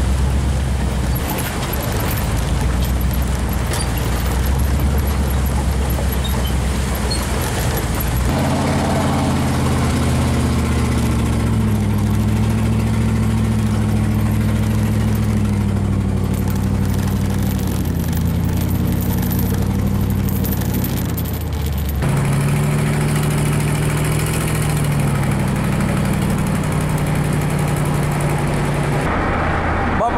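A vehicle towing a trailer drives along a road: a steady engine hum with road noise. The engine's pitch changes about eight seconds in and again about twenty-two seconds in.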